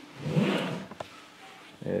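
A cardboard box pushed across interlocking foam floor mats: a short scraping rub, then a light knock about a second in.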